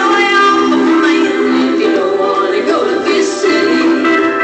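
Live country band music with a woman singing, played back through a television's speaker.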